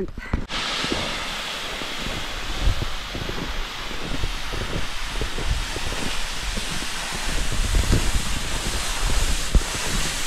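Wind buffeting the microphone: a steady rushing hiss with uneven low rumbling, starting about half a second in.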